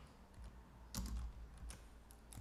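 Typing on a computer keyboard: a few scattered, faint keystrokes, the loudest about a second in.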